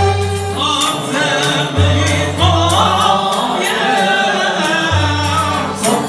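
Moroccan Andalusian (āla) orchestra: a group of men singing together over violins played upright and cello. The voices come in about half a second in, after a moment of strings alone.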